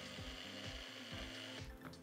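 Small bullet-style personal blender motor running steadily as it grinds a green chutney of fresh herbs, chillies and ice water, then stopping near the end. Background music with a steady beat runs underneath.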